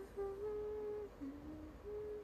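A young woman humming a slow tune with her mouth closed, in held notes that step between pitches and dip lower about a second in.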